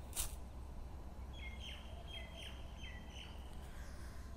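Faint bird chirping in the background: three short, high calls in quick succession, each dropping in pitch, over a low steady hum. A single click comes just before them, near the start.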